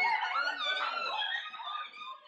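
Several teenagers' voices shouting over one another as they crowd and push someone, fading near the end.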